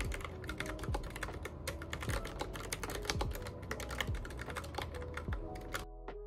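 Fast typing on a keyboard with round typewriter-style keycaps: a quick, dense run of key clicks that stops abruptly near the end.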